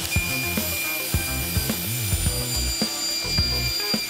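Table saw running as a pine board is fed through the blade to cut it, with a steady high whine, under background music.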